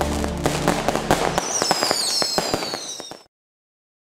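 Fireworks going off: a dense crackle of bangs and pops, with whistles falling in pitch partway through. The sound cuts off abruptly a little over three seconds in.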